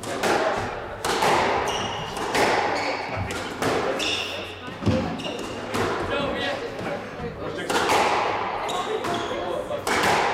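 Squash rally: the ball struck by rackets and cracking off the court walls, a sharp echoing hit roughly every second, with short squeaks of sneakers on the hardwood floor in between.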